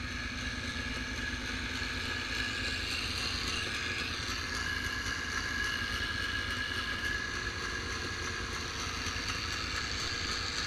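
ATV engines running steadily at low speed, a low rumble with a steady high whine over it.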